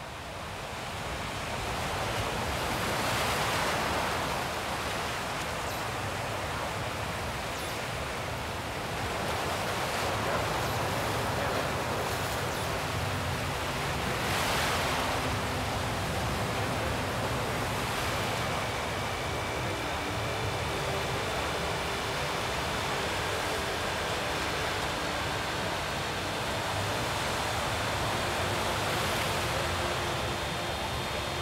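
An ambient soundtrack of washes of noise like surf, swelling and fading every few seconds. Faint steady high tones come in about two-thirds of the way through.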